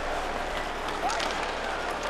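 Steady crowd murmur in a hockey arena, with a few faint sharp scrapes or clicks about a second in.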